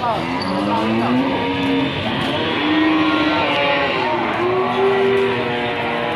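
Several cattle mooing, their long, pitched calls overlapping and rising and falling, with voices murmuring in the background.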